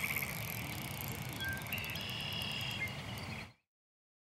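Faint outdoor background noise with a few thin, high steady tones, then a sudden cut to total silence about three and a half seconds in.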